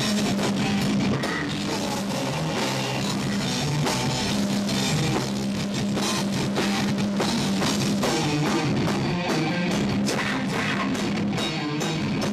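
A live metal band playing loud and dense: distorted guitars and bass hold low sustained notes over a pounding drum kit with cymbals.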